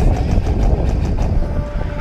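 A loud, steady low rumble on the microphone of a body-worn action camera, with faint steady tones coming in about halfway through.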